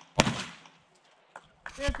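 A single pistol shot about a fifth of a second in, its echo trailing off over half a second, then a faint click about a second later.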